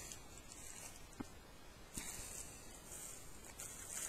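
Faint handling noise while items are picked up: a light click about a second in, then a soft, steady high hiss.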